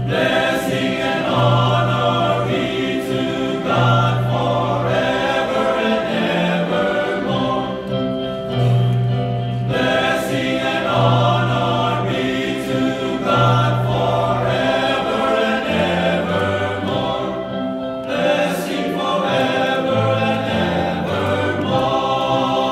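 Men's choir singing in parts, the basses holding long low notes beneath the upper voices.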